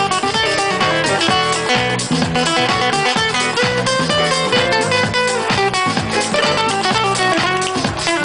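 Live band music led by an acoustic guitar with keyboard: a fast stepping melody over a steady percussion beat.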